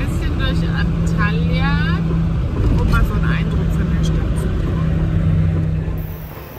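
Diesel engine of a MAN G90 8.150 truck droning steadily in the cab while driving, with faint voices over it.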